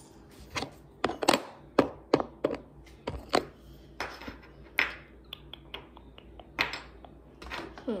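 Shells clicking and tapping as they are handled: an irregular string of sharp clicks, a few louder ones with a brief ring.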